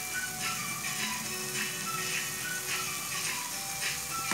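Background music, a slow tune of held notes, over a faint steady sizzle of broccoli, carrot and onion frying in a pan.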